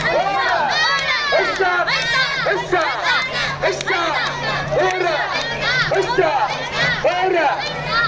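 Mikoshi bearers chanting together in rhythm as they carry a portable shrine on their shoulders, many voices shouting about twice a second without a break.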